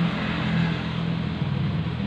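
Suzuki RC single-cylinder two-stroke engine idling steadily, heard close up.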